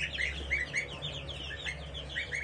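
A flock of goslings and chicks peeping: many short, high, falling peeps overlapping, several a second.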